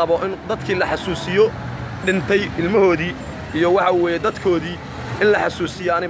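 Only speech: a man talking steadily in Somali, close to the microphone.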